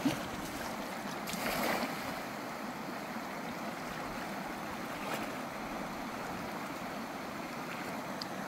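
Steady rushing of a shallow stream, with a brief splash at the start as a wading foot strikes the water and a louder splash about a second and a half in as a thrown cast net lands on the surface.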